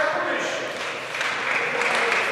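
Crowd applauding a prize-giving. The clapping eases off about half a second in and swells again just past a second in.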